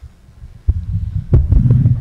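Two sharp low thumps, one under a second in and another over a second in, with a low rumble between and after them: handling noise on a microphone at a panel table.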